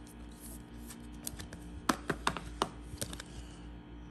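A trading card being slid into a rigid clear plastic top loader: a handful of light, sharp plastic clicks and taps between about one and three seconds in.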